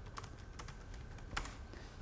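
Faint keystrokes on a computer keyboard as a search term is typed, with one sharper key click about one and a half seconds in.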